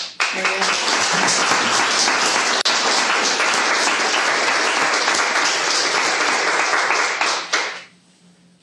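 Audience applause: a dense run of many hand claps that starts right away and stops abruptly near the end.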